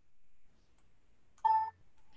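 A short electronic beep, one steady tone lasting about a third of a second, about a second and a half in, after a near-silent pause.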